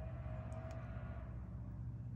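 A steady low hum, with a faint held tone in the first second or so.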